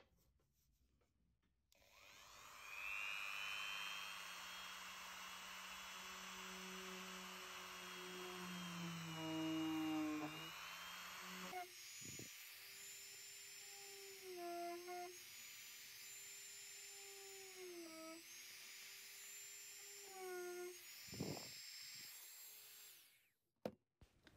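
Dremel rotary tool running at high speed, drilling holes in baked polymer clay pieces: a steady whine that starts about two seconds in and dips in pitch several times as the bit takes load. Its pitch jumps abruptly about halfway.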